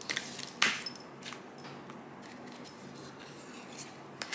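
Tarot cards being handled: a few short, light papery flicks and taps, the loudest about half a second in.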